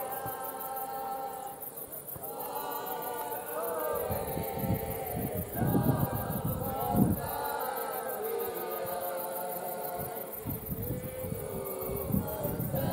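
Group of voices singing a slow unaccompanied song together in long held notes. A few low thumps come around the middle.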